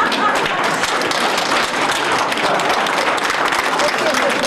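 Audience applauding: many hands clapping in a dense, steady patter.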